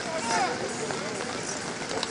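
Scattered distant shouting voices from players and people along the sideline of an American football field, with a few short calls over a steady open-air background.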